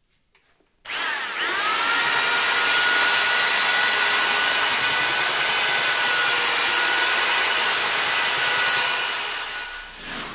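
Hand-held electric drill with a paddle mixer churning plaster in a plastic bucket. The drill starts about a second in with a rising whine as the motor spins up, then runs at a steady speed and dies away near the end.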